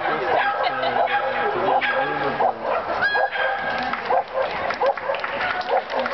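Dogs barking and yipping repeatedly in short high calls, over people's voices.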